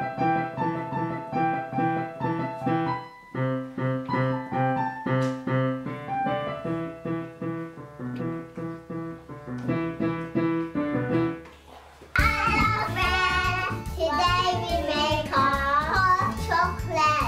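Piano played by a child: a simple melody of single, clearly separated notes, about two or three a second, with a brief pause about three seconds in. About twelve seconds in it cuts off suddenly, and a child's wavering singing voice takes over, louder, over background music.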